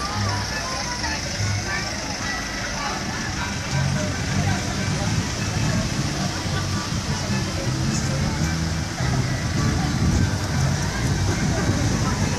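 Minibuses driving slowly past in a street procession, their engines running, over crowd chatter and music with low bass notes.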